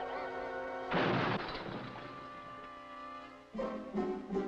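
Cartoon film score: held orchestral notes, broken about a second in by a loud crash that dies away over half a second. The music then fades down until a new chord comes in near the end.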